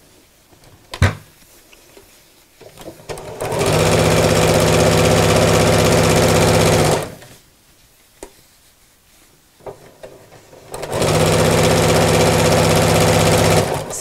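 Domestic electric sewing machine stitching bias binding onto a quilted mat, running at a steady speed in two runs of about three seconds each with a pause of a few seconds between them. A single click comes about a second in.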